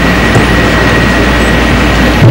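Steady loud hiss over a low electrical hum, with a thin steady high whine on top: the noise of the hall's sound system or recording, with no voice on it.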